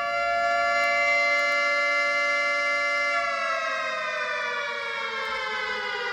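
Air-raid siren played from a smartphone's speaker held up to a microphone: one long wail that holds a steady pitch, then slowly winds down in pitch from about three seconds in.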